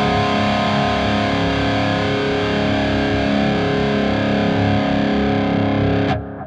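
High-gain distorted electric guitar through a Line 6 Helix, a single note or chord left ringing with long, flat sustain: it holds its level without dying away. It is choked off suddenly right at the end.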